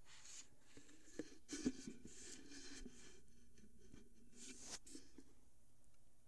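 Scratchy rubbing and scraping from the phone and the containers around it being handled, with a few light knocks, the sharpest about a second and a half in.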